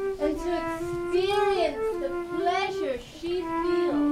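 Music: a single high melody of held notes stepping up and down, with brief sliding glides between some notes.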